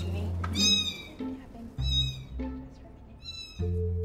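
A one-week-old kitten meowing three times in short, high-pitched calls: the cry a young kitten uses to call its mother over. Background music runs underneath.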